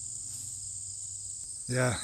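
Steady high-pitched chorus of crickets in a late-summer meadow.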